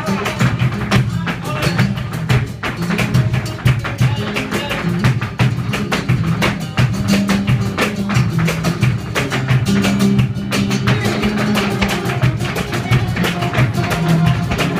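Live flamenco music from guitar and saxophone, with fast, dense percussive strikes throughout, from the dancers' footwork and hand clapping (palmas).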